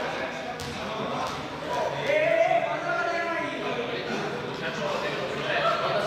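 Indistinct voices of several people echoing in a large sports hall, with a few short light knocks from balls.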